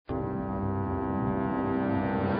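Opening theme music of a TV programme: a deep, sustained chord of many tones that starts abruptly and holds steady.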